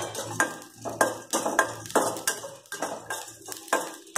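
Perforated steel spatula scraping and clinking around a small stainless-steel kadai as it stirs roasting dals and seeds, in quick strokes about two or three a second.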